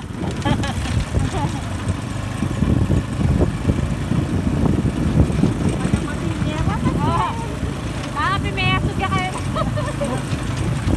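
Motorcycle tricycle running under way, a steady rough engine and ride rumble; brief voices call out about seven and nine seconds in.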